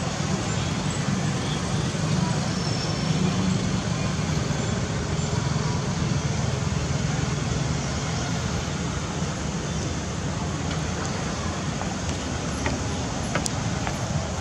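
Steady low rumbling background noise, even throughout, with a few faint light clicks near the end.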